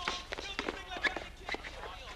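Footsteps of several basketball players running on an asphalt court, a series of irregular sharp slaps, with men's voices calling out over them.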